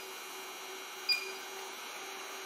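Quiet room tone with a low steady hum, and one short high electronic beep about a second in from the ALL-TEST Pro 7 motor tester's keypad as the DF and capacitance test is confirmed and starts.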